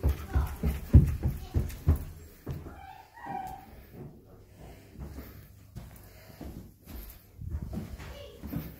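Footsteps thudding up carpeted stairs, several heavy steps in the first two seconds or so, then softer steps on the landing with a brief squeak about three seconds in.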